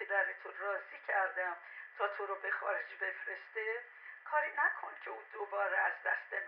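Speech only: a voice heard through a telephone, thin and cut off in the lows and highs, talking without pause on the other end of a call.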